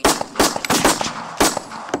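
Gunshot sound effects dropped into a rap track's mix: about five sharp, echoing shots in an uneven burst over a second and a half.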